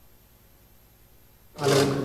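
Near silence with a faint low hum, then about a second and a half in loud, overlapping voices of a crowd of people talking start abruptly.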